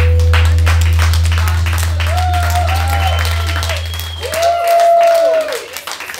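A live band's last chord ringing out, its low bass note held until it cuts off about four and a half seconds in, as the audience claps and cheers.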